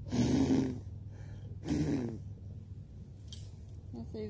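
Two short, breathy vocal sounds from a person close to the microphone, one at the start and one about two seconds in.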